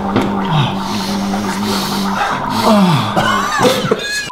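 Men's voices without words: one long steady held note, then several falling squealing cries near the end while they grapple with open mouths.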